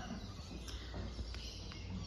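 Quiet outdoor background: a steady low rumble with a few faint ticks.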